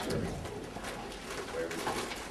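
An indistinct voice asking a question, spoken away from the microphone.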